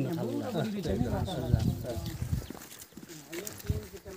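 People talking in a group, voices overlapping.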